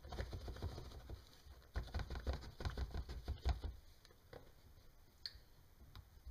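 Baking soda poured from a cardboard box into a plastic measuring cup: a dense run of small ticks and rustles for about three and a half seconds as the powder falls and the box is shaken, then a couple of light clicks.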